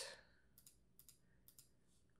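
Near silence, with a few faint, sparse clicks around the middle.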